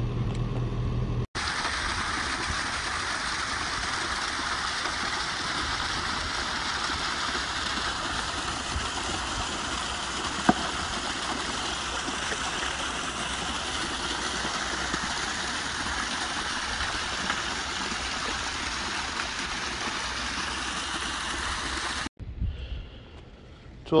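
Groundwater from veins in the dug-out soil trickling steadily into a flooded foundation hole, a continuous rushing splash with a single click about halfway through. A mini excavator's engine idles briefly before it.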